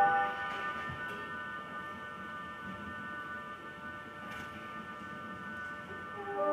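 Brass band playing live: a loud full chord breaks off at the start, leaving a soft, steady high chord held for several seconds.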